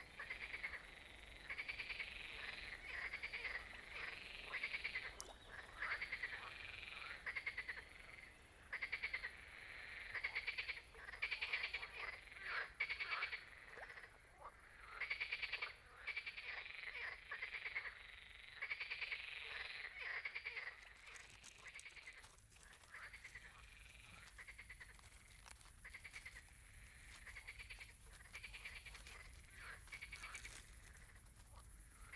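A chorus of water frogs croaking: overlapping runs of pulsed calls, each about a second long, one after another, thinning out and growing fainter in the last third.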